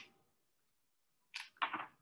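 Faint paper rustling as Bible pages are leafed through: a brief rustle at the start, then two quick rustles close together near the end.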